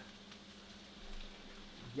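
Faint sizzling of chicken and freshly added frozen vegetables frying in a skillet, over a steady low hum.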